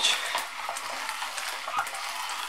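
A very old meat grinder crushing roasted sunflower seeds into meal: a steady gritty crunching with many small clicks and metal scraping.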